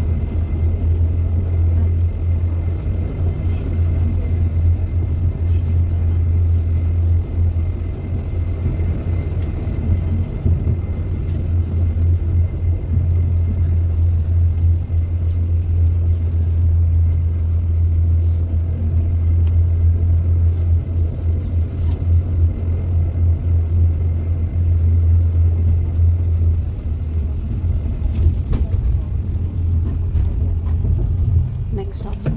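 A city tram running along its rails, heard from on board: a steady low rumble throughout, with a faint high whine through the first half.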